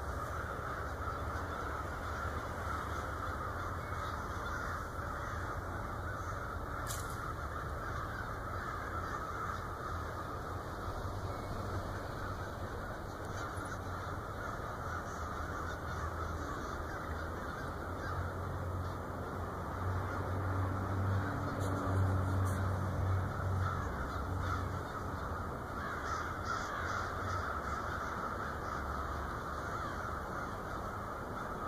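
A large flock of crows cawing together in a steady, distant din of many overlapping calls. Under it runs a low rumble that swells about twenty seconds in.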